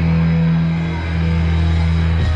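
Punk rock band playing live: a low guitar note held and ringing steadily.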